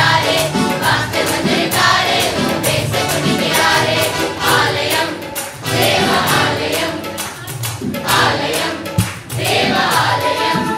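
A children's and youth choir singing a lively Tamil Christian song together, accompanied by electronic keyboard with a steady beat. A single sharp click stands out near the end.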